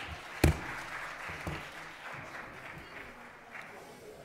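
A single sharp gavel strike on the wooden bench about half a second in, closing the meeting, followed by scattered applause and room noise that slowly fades.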